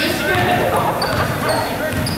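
A basketball dribbled on a hardwood gym floor, with short high sneaker squeaks and several voices echoing in the large gym.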